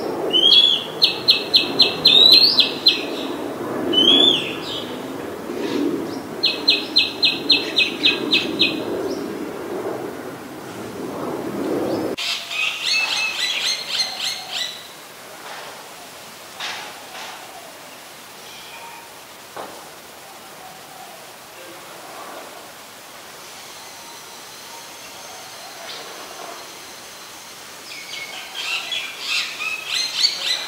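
Oriental magpie robin singing: fast runs of sharp, evenly repeated notes broken by rising whistles, a further phrase about twelve seconds in, then only scattered notes before the song picks up again near the end.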